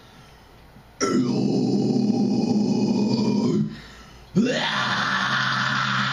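Harsh growled vocals into a handheld microphone: two long growls, each about two and a half seconds, with a short gap between them. The second one starts with a rising sweep in pitch.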